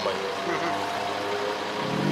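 A car engine idling steadily, a low even hum, with faint speech underneath.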